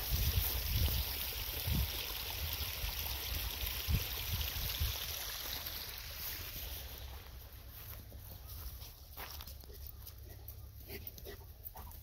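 Shallow stream water running and trickling through a concrete channel, an even hiss that fades over the second half. A few low thumps in the first few seconds.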